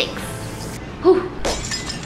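A short edited-in crash sound effect about a second in, with a ringing tail, over background music.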